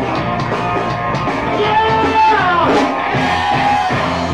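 A live rock band playing: electric guitars and drum kit with a male lead vocal. About halfway through, a long high note is held and then slides down.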